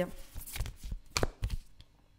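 A deck of divination cards handled and cut between the hands, with a card laid down on a wooden table: a handful of sharp card snaps and taps. The loudest comes about a second in.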